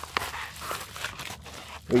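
Faint rustling of a paper mailer envelope as an item is pulled out of it by hand, with one sharp click just after the start.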